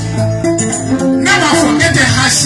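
Live music: a man singing into a microphone over instrumental backing, with his voice rising in about halfway through.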